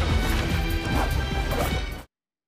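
Anime battle-scene soundtrack: music under repeated loud crashing impacts, cutting off abruptly at the end.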